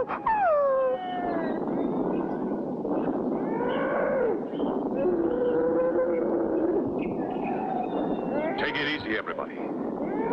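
Cartoon creature cries and howls. Falling wails come in the first second, then a run of calls over a steady rough noise.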